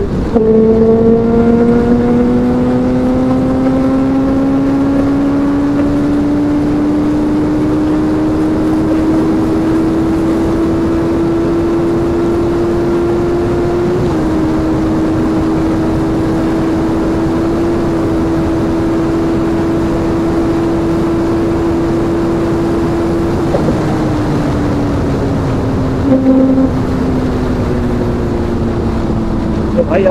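Honda CBR650F inline-four engine under way. Its note drops suddenly at the very start, as in a gear change, then rises slowly and evenly for about fourteen seconds as the bike accelerates, holds steady, and falls away from about two-thirds through as the throttle is eased off. Wind rush on the helmet microphone runs under it throughout.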